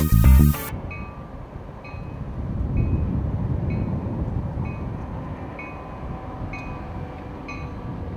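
A train passing: a steady low rumble that swells about two seconds in and slowly fades, with a short high ringing tone repeating about once a second over it. Music cuts off under a second in.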